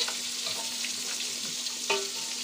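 Food frying in hot oil: a steady sizzle with small crackles throughout. A short bit of a voice comes in near the end.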